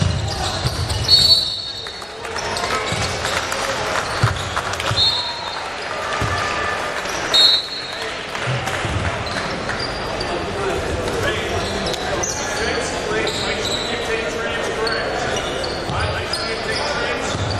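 Referee's whistle blown in short shrill blasts: a loud one about a second in, a fainter one around five seconds, and another loud one at about seven and a half seconds, stopping play. Under it, a basketball bounces on the hardwood court and players and spectators shout and chatter indistinctly in a large echoing hall.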